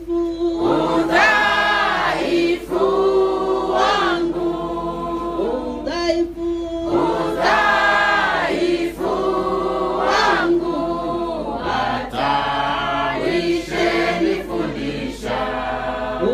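A congregation of men and women singing together, phrase after phrase, loud and steady.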